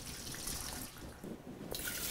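Clear moonshine poured in a stream from a glass measuring cup into a stainless steel stockpot: a faint, steady splashing of liquid into the pot.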